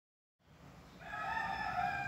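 A rooster crowing once: one long held call that starts about a second in and is still going at the end.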